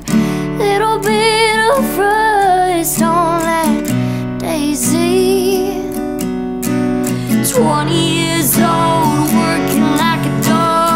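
Acoustic guitar strummed steadily while a woman sings over it in phrases of held notes with vibrato, with a short gap between phrases around the middle.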